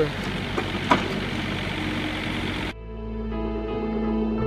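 Komatsu mini excavator's diesel engine running, with a couple of sharp knocks in the first second. About two-thirds of the way in, it cuts off abruptly to slow ambient background music with long held tones.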